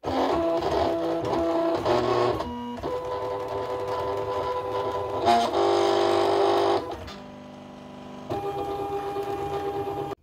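Silhouette electronic cutting machine cutting out a print-and-cut sheet: its stepper motors whine in steady tones that jump to a new pitch every second or two as the mat feeds back and forth and the blade carriage moves. There is a quieter stretch about seven seconds in.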